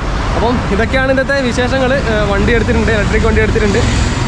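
Speech: a voice talking over a steady low background rumble.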